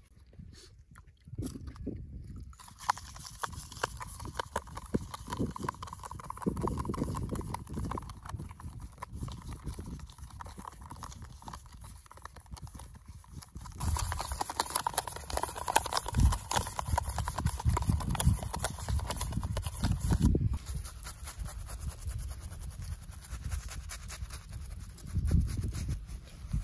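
Soft cloth rustling and handling at first, then about halfway through a shaving brush swirled quickly in a cup of lather, a dense wet swishing that goes on to the end.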